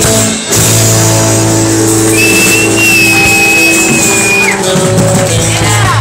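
Live rock-and-roll band playing loud, with guitar and long held notes. A high steady whistle sounds over it for about two seconds midway.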